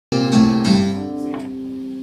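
Live band's electric guitars holding a ringing chord that fades away over about two seconds.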